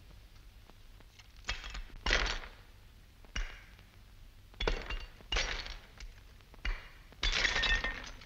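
A bust being smashed apart with a heavy metal tool on a table: about seven separate breaking crashes with brittle clinking of shards. The last crash, near the end, is the longest and loudest.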